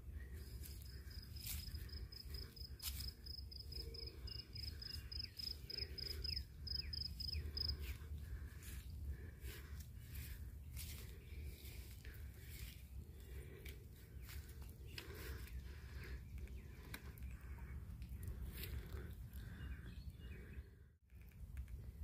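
A cricket chirping in a steady, even series of high-pitched pulses, several a second, stopping about eight seconds in, over walking footsteps and a low rumble on the phone's microphone.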